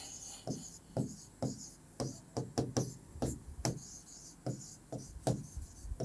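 Pen strokes on a writing board as words are written: a string of short taps and scratches, about two a second.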